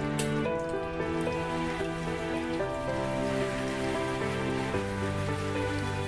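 Calm background music of slow, held chords, over a steady rain-like patter of water.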